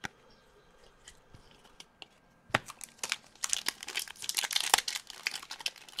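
Plastic wrapper of a hockey card pack being torn open and crinkled: quiet at first, then a dense run of sharp crackles from about two and a half seconds in.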